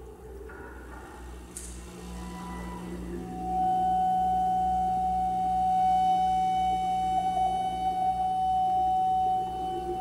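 Experimental music on an invented acoustic pipe instrument with live electronics: a steady low drone underneath, then from about three and a half seconds in a loud, sustained high tone with overtones, held to the end.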